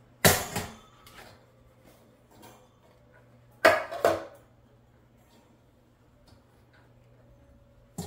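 Two brief clatters of a metal loaf pan knocking against a wire cooling rack and stone countertop as a baked loaf is turned out of the pan, the first about half a second in and the second around four seconds in.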